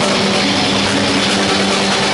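Live heavy rock band playing loudly: distorted electric guitars and bass holding sustained low notes over the drums.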